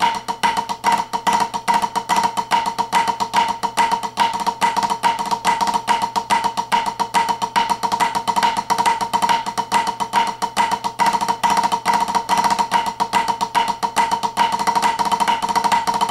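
Sticks playing a fast, continuous rudiment exercise of flam drags, cheese, flammed rolls and flammed five-stroke rolls on a small drum or practice pad with a white head. The strokes come densely and evenly, and the head rings with a steady pitched tone.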